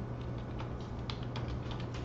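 Typing on a computer keyboard: a run of irregular key clicks, over a steady low hum.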